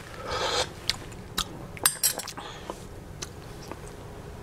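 A brief slurp of tea from a spoon, then several light clinks of a metal measuring spoon against a small glass cup of milk tea.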